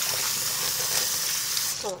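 Water running from a tap into a sink, a steady hiss that cuts off suddenly near the end.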